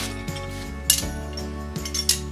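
Background music with steady held tones, and a single sharp metallic clink about a second in as pieces of forged steel are handled at the anvil.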